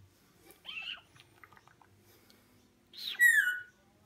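Rainbow lorikeet giving two short pitched calls: a brief one about a second in, then a louder call that slides down in pitch near the end, with a few faint clicks between.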